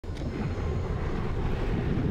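A steady low rumble, starting abruptly at the very beginning and holding without a break, with a faint hiss above it.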